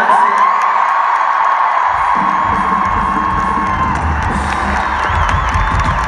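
Large arena crowd cheering and screaming, with many high held voices; a low rumble comes in about two seconds in and carries on under the cheering.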